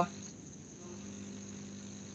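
Faint steady hum with background hiss, and no clear event.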